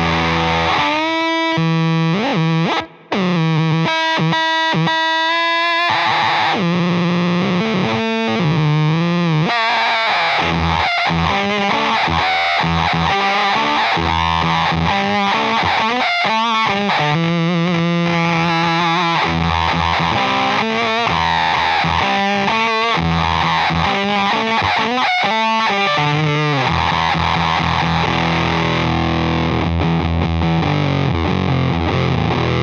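Electric guitar through a Wrought Iron Effects H-1 germanium fuzz pedal with its oscillation circuit set to full: a thick, heavily distorted fuzz with pitched oscillation tones sliding up and down and stuttering as the strings are played. There is one brief cut-out about three seconds in.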